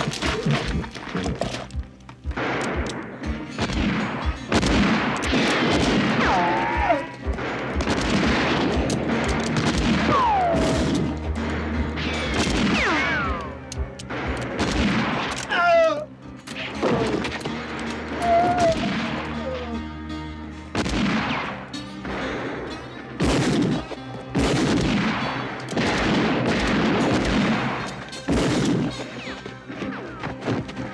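Film gunfight effects: a long run of rifle gunshots, at times in quick bursts, with several short falling whines of bullet ricochets in the middle.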